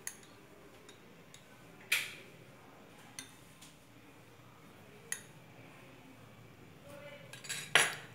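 A spoon clinking and tapping against a steel mixing bowl: a few separate sharp clinks, with one clear clink about two seconds in and the loudest near the end.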